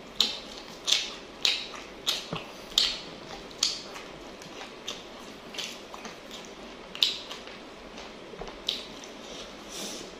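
Close-miked chewing of fried chicken with crispy fried-batter crumbs (ayam kremes): short, sharp mouth sounds about every two-thirds of a second for the first four seconds, then a few more spaced out toward the end.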